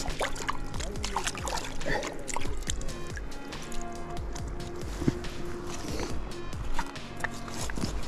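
Background music with held, slowly changing notes, over scattered clicks and sloshing as rubber boots shift in shallow water on river cobbles.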